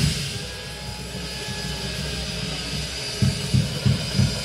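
A lull in a live drum-kit ensemble: a steady low rumble and high hiss without drum strokes. Drum hits come back in about three seconds in.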